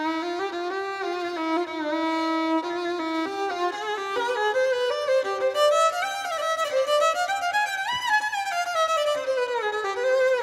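A violin playing a solo melody with sliding notes. The line climbs from around four seconds in to a high point near eight seconds, then falls back down.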